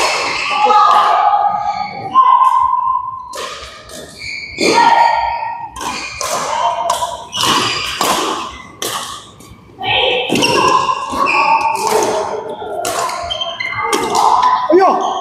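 Badminton doubles rally: sharp racket hits on the shuttlecock and thuds of footwork on the court, with voices in the hall.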